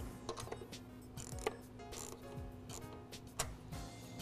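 Scattered light clicks and taps of a hand tool and wiring being handled, irregular and quiet, over soft background music.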